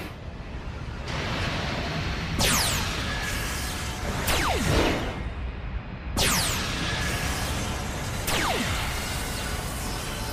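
Animated sci-fi soundtrack: a music and effects bed with a falling whoosh about every two seconds, four in all, as a starship flies through space.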